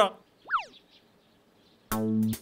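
Cartoon comedy sound effect: one quick pitch glide that shoots up and slides back down, about half a second in. Near the end, background music starts with plucked guitar notes.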